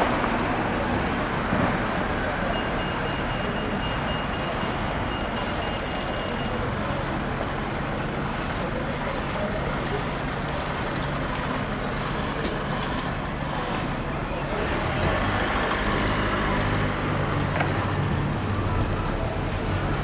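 Steady street traffic: cars and vans driving past at low speed, with a low engine hum that grows stronger in the second half.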